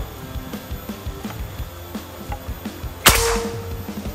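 A single shot from a PCP Morgan Classic air rifle filled to 3000 PSI: one sharp, loud crack about three seconds in, with a brief ring after it. Quiet background music runs under it.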